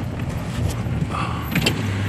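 Truck engine running, heard from inside the cab as a steady low hum, with a few light clicks near the end.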